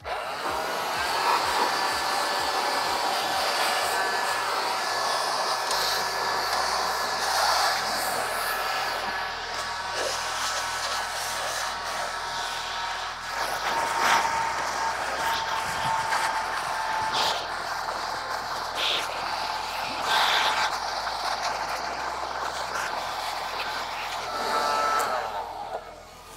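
Black & Decker 20-volt cordless leaf blower running steadily, a rush of air with a thin motor whine, its nozzle blasting dust out of an open computer case. The sound swells and dips as the nozzle is moved around and stops just before the end.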